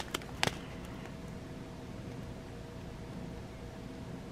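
A few soft clicks in the first half second as a plastic bag of diamond-painting drills is handled, then steady low room noise with a faint hum.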